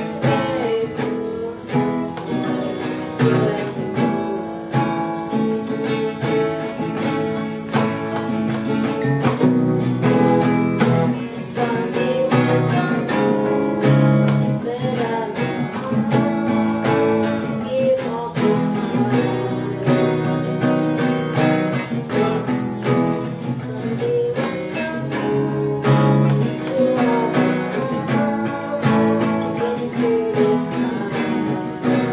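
A boy singing a rock song while strumming chords on a steel-string acoustic guitar.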